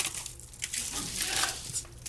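Aluminium foil wrapping crinkling as a foil-wrapped cheesesteak is handled, with a sharper crinkle at the start and lighter rustling after.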